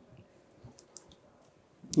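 Quiet room tone in a pause between sentences, with a few faint, short clicks in the first second; a man's voice starts again right at the end.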